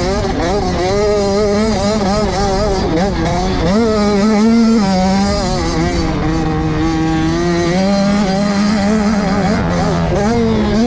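Motocross bike engine heard from on board, its pitch repeatedly rising and falling as the rider opens and closes the throttle along the track, with music mixed over it.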